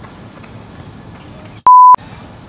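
A single loud, pure 1 kHz beep lasting about a third of a second near the end, with all other sound muted around it: an edited-in censor bleep. Before it, faint outdoor background noise.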